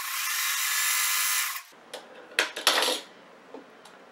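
Electric sewing machine running steadily for under two seconds as it stitches a seam, then stopping. A couple of short noises follow as the sewn piece is handled.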